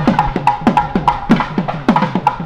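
South Indian temple music: thavil drums played in a fast, steady beat of about five strokes a second, with sharp stick clicks and low strokes that drop in pitch, under the steady tones of a nadaswaram.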